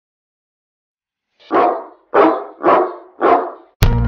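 A dog barks four times, about half a second apart, after a silent start. Music starts just before the end.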